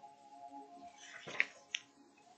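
Pages of a hardback book being turned by hand: a short paper rustle about a second in, then two crisp snaps of paper in quick succession. Faint steady background music runs underneath.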